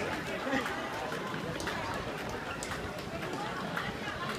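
Footfalls of a large crowd of runners on brick pavement, a steady mass of shoe strikes with no single step standing out, mixed with spectators' chatter.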